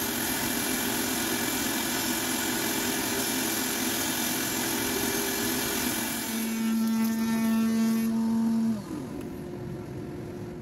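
Bandsaw running and ripping a cedar board lengthwise along its fence: a steady, loud whir of motor and blade with sawing noise. Past the middle a stronger pitched hum comes in, then falls away and the sound drops in level shortly before the end.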